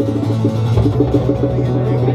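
Acoustic guitars picking a quick run of plucked notes, played live through the stage PA, with a low note coming in just under a second in.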